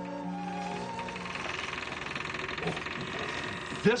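Sustained orchestral string music ends about a second in. It is followed by a steady, rapid rasping, grating noise lasting a couple of seconds, until a man starts speaking at the very end.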